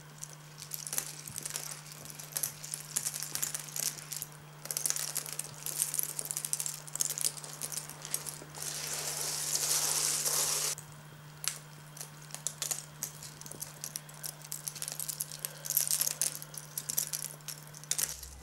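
Small objects being handled: irregular light clicks, rattling and crinkling, with a denser rustling stretch about eight to ten seconds in. A steady low hum runs underneath.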